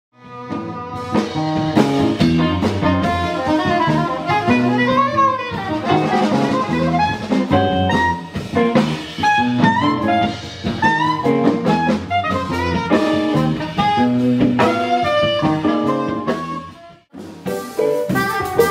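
Live jazz group: a soprano saxophone plays a melody over electric bass and drum kit. Near the end the music cuts out for about a second, then comes back with drums and cymbals.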